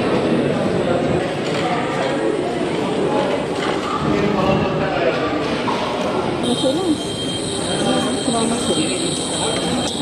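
Indistinct chatter of many people talking at once in a large indoor hall. About six and a half seconds in, a steady high-pitched whine comes in and holds.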